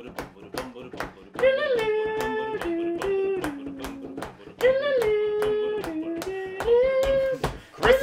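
Hands clapping a steady beat, about three claps a second, under a wordless sung tune of long held notes that starts about a second and a half in, in two phrases that step down in pitch. It is the counted-in opening of an improvised song.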